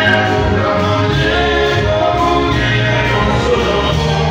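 Live gospel hymn: a male vocal group singing together in harmony, backed by electric guitars and a band with a steady bass line.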